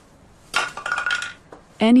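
Metal clattering and scraping, about half a second in and lasting just under a second, with a ringing tone through it.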